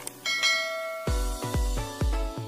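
A bright notification-bell chime rings out as the bell icon of an animated subscribe graphic is clicked. About a second in, electronic music starts with a heavy bass beat about three times a second.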